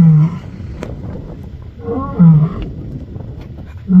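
A lioness roaring: three short, deep roar-grunts about two seconds apart, part of a roaring bout.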